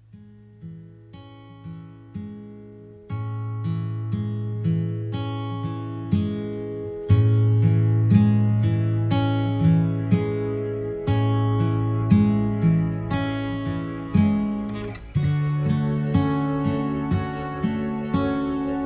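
Background music of plucked acoustic guitar in an even, gentle rhythm over held low notes. It fades in at the start and steps up in loudness twice in the first several seconds.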